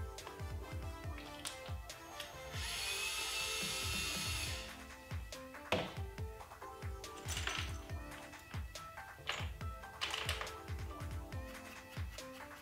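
Background music with a steady beat. About two and a half seconds in, a Ryobi One+ cordless drill runs for about two seconds, backing out a screw to take the plastic puzzle apart. Several sharp clicks follow.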